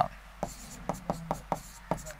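A pen writing on a board: a handful of short, sharp taps and scratches as figures are written out.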